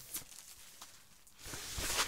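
Faint rustling and a few light clicks of a vinyl LP's cardboard gatefold sleeve and plastic shrink-wrap being handled, growing louder near the end.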